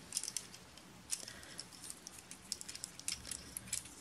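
Faint, scattered plastic clicks and light rattling from a Transformers Bumblebee action figure as its leg joints and small movable posts are worked by hand during transformation.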